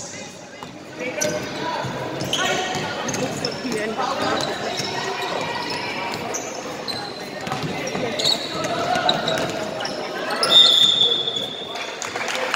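A basketball being dribbled on a hardwood gym floor during a game, with players' and spectators' voices echoing in a large hall.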